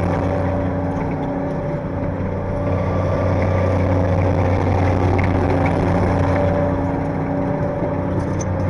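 T-80 tank's gas-turbine engine running steadily: a low rumble with a steady whine over it.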